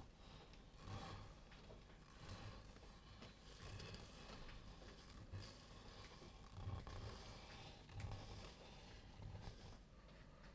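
Near silence, with faint soft scrapes and rustles about once a second from a wooden skewer drawn through wet acrylic paint and a plastic-gloved hand moving.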